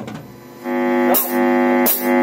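Band rehearsal music at a cut between takes: the previous playing fades out, then about two-thirds of a second in a steady held chord with many overtones begins and sustains, with two short bright hits over it.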